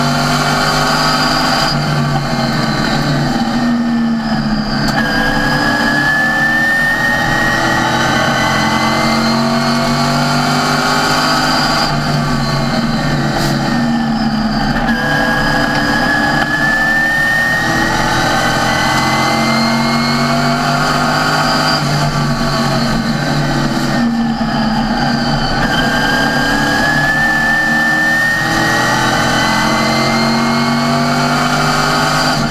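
NASCAR Sportsman race car's V8 engine heard from inside the cockpit at racing speed, with a high whine riding over it. Its pitch falls off briefly, then climbs steadily back up, three times over: the driver lifting for each pair of turns and accelerating down the straight that follows.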